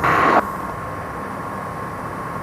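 Steady engine and cabin drone of an aircraft in flight, heard through the headset intercom, opening with a short burst of radio static as the radio is switched to the new approach frequency.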